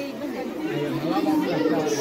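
Chatter of a crowd: several people talking over one another, no single voice standing out.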